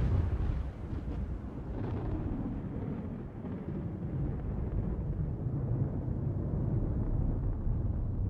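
Deep, steady low rumble of trailer sound design under the title card, the long tail of a heavy boom.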